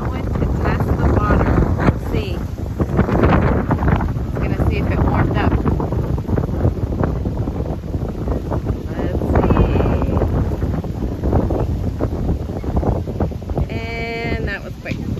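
Strong wind buffeting the microphone, a loud, rough, steady rumble, with people's voices heard faintly now and then behind it.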